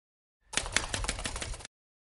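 Intro sound effect for an animated title card: a rapid clatter of sharp clicks over a low rumble, starting about half a second in and cutting off abruptly after about a second.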